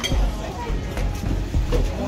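Indistinct chatter of diners in a busy restaurant dining room, with music underneath and no single distinct sound standing out.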